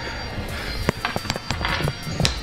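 Small steel threaded bonding fixings (big heads) clinking as gloved hands handle them: a handful of sharp little clicks in the second half, over faint background music.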